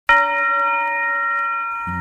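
A bell struck once, its several clear tones ringing on and slowly fading; a man's voice begins just before the end.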